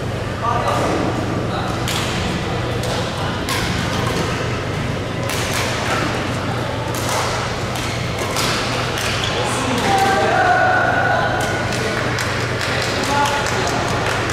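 Badminton rally in a large hall: rackets striking the shuttlecock again and again, each hit a sharp crack, with people talking in the background and a steady low hum from the hall.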